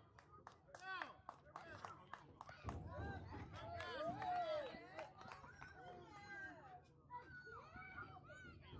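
Spectators' voices, adults and children, talking and calling out around a youth baseball field, with one voice calling out loudly about four seconds in.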